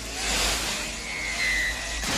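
Film trailer action sound effects: a loud rushing whoosh over a deep rumble, with a steady high tone coming in about halfway through.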